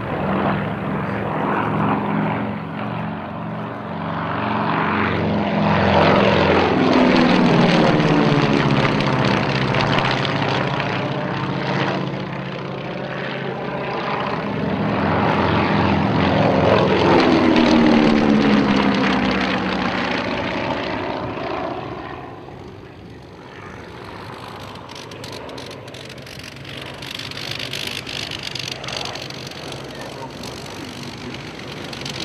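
Avro Anson Mk.1's twin Armstrong Siddeley Cheetah radial engines droning as the aircraft flies display passes overhead. The sound swells twice to a loud peak, its pitch dropping as the aircraft goes by, then fades near the end.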